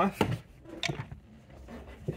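Two light clicks, one just after the start and one just under a second in, with soft handling noise: a screwdriver and the plastic trim around a steering wheel's airbag module being handled.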